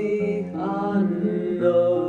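A slow song: a voice singing a held, chant-like line over acoustic guitar.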